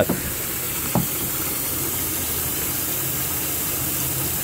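Steady hiss of moving water in an aquaponics fish tank, with one brief click about a second in.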